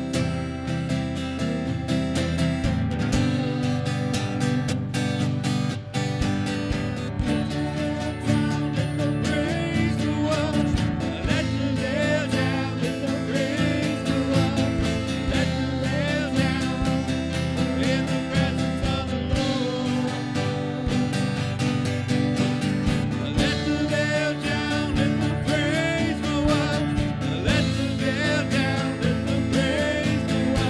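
Live worship band playing an instrumental passage: acoustic guitar strumming over keyboard and drums, with a wavering melody line coming in about ten seconds in.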